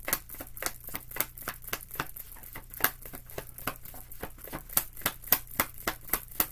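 A tarot deck being shuffled by hand, the cards snapping against each other in a steady run of quick, sharp clicks, about three or four a second.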